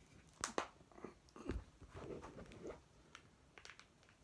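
Small plastic Teenage Mutant Ninja Turtles action figures handled at close range as a head is worked off its ball joint. Faint clicks and plastic rubbing: two sharp clicks about half a second in, then scattered softer clicks.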